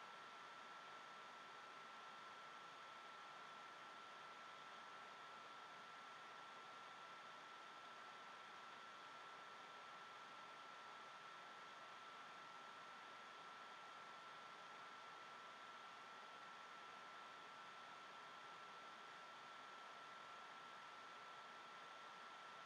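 Near silence: a faint, perfectly steady hiss with a thin constant high tone running under it and no other events.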